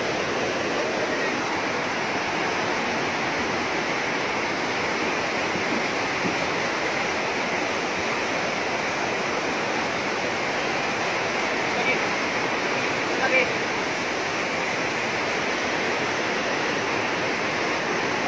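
Fast river rapids rushing over rocks, a steady loud roar of water.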